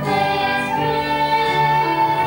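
Girls singing together into microphones, holding one long note through the second half.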